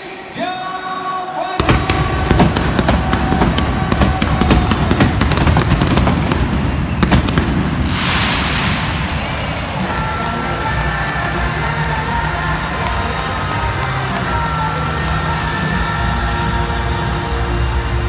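Indoor stadium victory pyrotechnics: a sudden run of fireworks bangs and crackles starts about a second and a half in over loud music, and about 8 s in a rushing hiss as smoke jets fire. The celebration music carries on with a steady beat.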